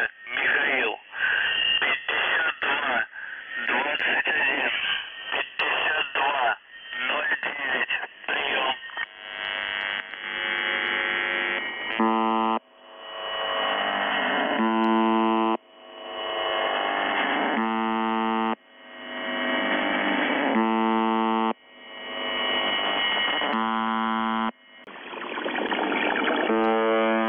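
Shortwave reception of UVB-76, "The Buzzer", on 4625 kHz. For about the first nine seconds a voice reads out a message through static and fading. Then the station's buzz tone comes back, each buzz just under a second long and repeating about every three seconds, with receiver hiss swelling up between buzzes.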